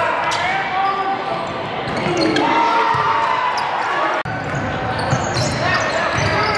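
Basketball being dribbled on a hardwood gym floor during play, with players' and spectators' voices echoing through the large gym. The sound drops out for an instant about four seconds in.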